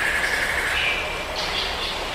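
A steady rushing background noise with a few faint, short high-pitched tones in it, like a traffic or ambience sound-effect bed.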